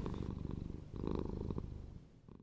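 A cat purring: a low, rapidly pulsing rumble that grows louder for a moment about a second in.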